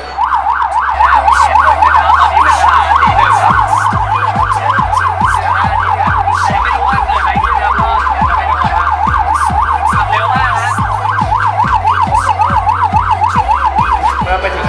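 Electronic emergency-vehicle siren in a fast yelp, its pitch rising and falling about three to four times a second. A regular music beat runs underneath.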